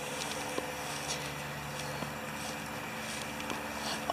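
Steady low hum with a faint droning tone that fades out about halfway through, and a few light ticks.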